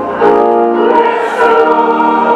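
Church choir singing a hymn in held chords, the chord changing twice.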